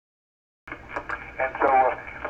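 Dead silence, then a voice starts speaking about two-thirds of a second in, with a thin, narrow-band, telephone-like sound and a faint low hum beneath it.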